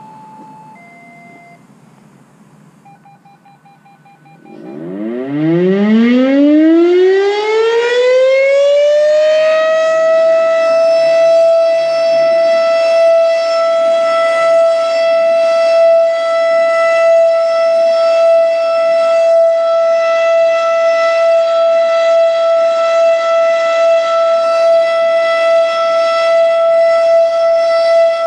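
Two-tone radio activation tones beep briefly, then the Federal Signal Thunderbeam RSH-10A siren (fast-rotating reflector) starts about five seconds in. It winds up from a low pitch to its full high tone over about five seconds and then holds one steady tone: the Alert signal.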